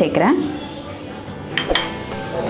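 Background music with a short, sharp metallic clink that rings briefly, about a second and a half in.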